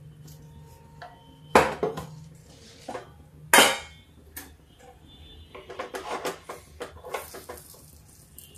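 Stainless steel pot lid clanking against metal twice as it is lifted off a pan of baati and set down, followed by a run of lighter clinks and taps as the dough balls are turned in the pan.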